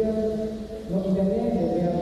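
Voices chanting into microphones. They hold long notes that step between a few pitches, with a short break between phrases about a second in.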